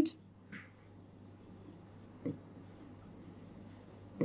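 Faint scratching of a stylus writing on an interactive touchscreen board, with a soft tap a little past two seconds in.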